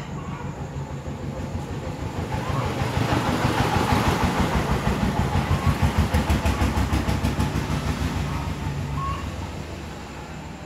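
Kubota ZL3602 tractor's diesel engine idling with a steady, rapid knock, growing louder and then fading again.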